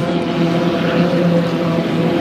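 Engines of 1.5-litre class racing hydroplanes running at racing speed on the water: a steady, loud drone with an unchanging pitch.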